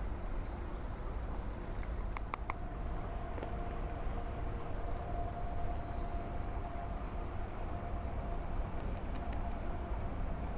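Light plastic clicks from a spice shaker and a small plastic spice container being handled as seasoning is poured, three close together about two seconds in and a few more near the end, over a steady low outdoor rumble.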